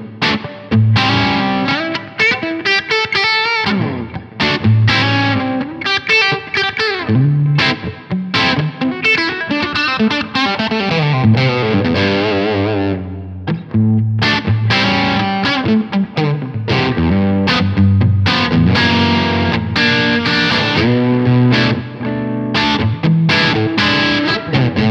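Ibanez AR220 electric guitar with humbucker pickups played through an overdriven amp, mixing picked chords with fast single-note runs and bent notes. The playing pauses briefly about halfway.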